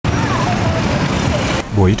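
City street noise: steady traffic with passers-by's voices. It cuts off abruptly about a second and a half in, and a narrator's voice starts.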